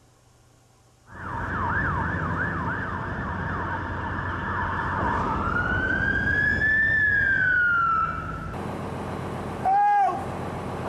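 Emergency vehicle siren starting suddenly about a second in with a fast up-and-down yelp, then switching to a slower wail that rises and falls, over the vehicle's engine running. Right at the end a man cries out in pain.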